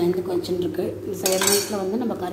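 A steel ladle scraping and clinking against the inside of a metal pot while stirring thick sambar, with one longer, louder scrape a little past halfway.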